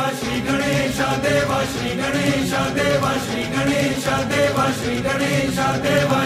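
A group of voices chanting a devotional mantra in a steady rhythm over backing music: the choral opening of a Ganesh devotional song.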